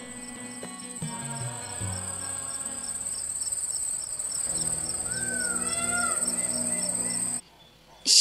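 A steady, high-pitched cricket trill over soft music. The music has held notes, a bass line falling stepwise between about one and two seconds in, and gliding, wavering notes in the second half. All of it stops suddenly shortly before the end.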